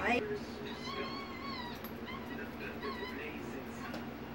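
A Java macaque giving high-pitched, whining calls that waver up and down in pitch: a long one about a second in and a shorter one around three seconds.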